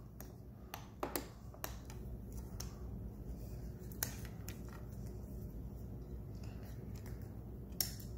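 Small plastic clicks and taps from a GoPro Hero 7 action camera being handled and fingered at its side door, a handful spread through with the sharpest about a second in and about four seconds in, over a faint steady room hum.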